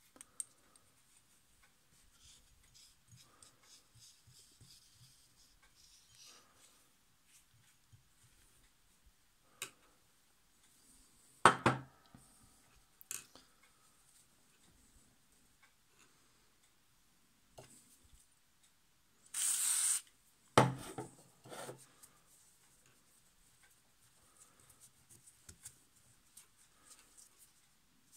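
Cloth rubbing and wiping on a sewing machine's plastic handwheel as it is cleaned, with faint scratching throughout. A few sharp knocks come through, the loudest about eleven seconds in and again about twenty seconds in, along with a short hiss just before the second.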